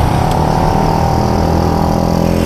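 A vehicle engine idling steadily at an even pitch.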